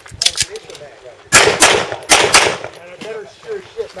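Pistol firing a rapid series of shots in quick strings, the loudest cluster falling between about one and two and a half seconds in.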